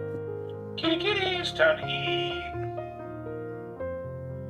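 PetLibro automatic pet feeder's small built-in speaker playing its pre-recorded voice meal call, a short spoken message about a second in, over soft background piano music.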